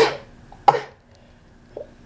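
A woman sneezing twice into her sleeve, the second sneeze about two-thirds of a second after the first.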